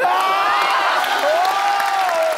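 Studio audience cheering, with long whoops that rise and fall over clapping.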